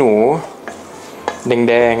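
A wooden spatula tossing salad in a stainless steel mixing bowl: soft scraping with two light knocks against the metal in the middle, between stretches of a man speaking.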